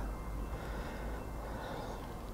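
Quiet outdoor background with a faint, steady low rumble and no distinct events.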